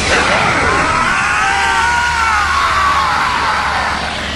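Men's battle cries: one long yell that rises and then falls in pitch, over music and a steady rushing noise.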